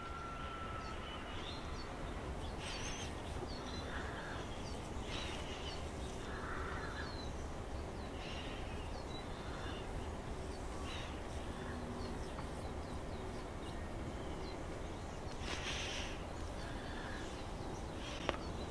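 Quiet outdoor ambience with a steady low hum, and several short bird calls scattered through it.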